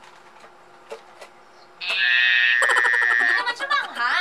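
A few faint crunches of chewing. About two seconds in, a loud, steady, high-pitched alarm-like buzzer tone lasts about a second and a half and cuts off sharply. A short vocal cry follows near the end.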